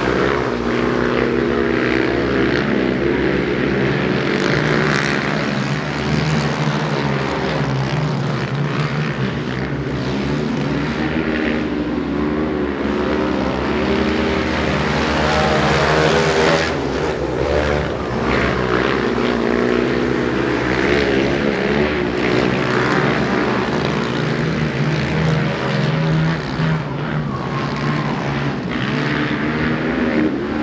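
Two speedway racing quads (ATVs) at racing speed on a dirt oval, their engines revving. The engine note rises and falls again and again as they accelerate and ease off.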